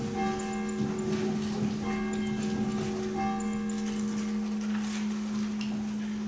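Church bells ringing before the service, repeated strikes of several ringing tones about a second apart that fade away in the last couple of seconds.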